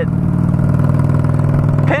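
Honda Shadow VLX's V-twin engine running steadily as the bobbed motorcycle cruises along the road, heard from the rider's seat.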